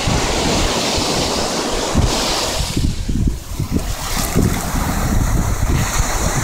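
Shallow surf washing up over the sand, with wind buffeting the microphone in gusts.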